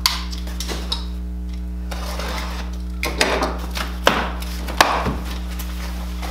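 Cardboard shipping box being handled and opened by hand: a few light knocks, then scraping and tearing of packing tape and cardboard flaps in short bursts from about three seconds in, over a steady electrical hum.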